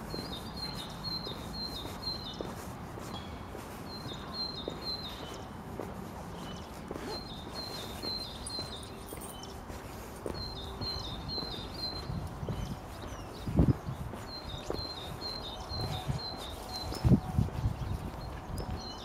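A small bird singing short phrases of several quick high notes, repeated every few seconds, over a low steady background rumble. Footsteps on pavement, with a couple of louder thumps in the second half.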